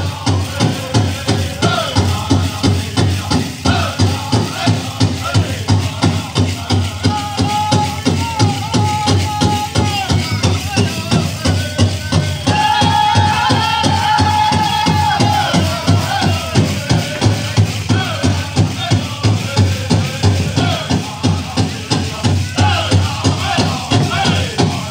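Powwow drum group singing a jingle dress dance song over a big drum struck in a steady, even beat, with long held high notes in the middle, and the tin jingle cones on the dancers' dresses rattling.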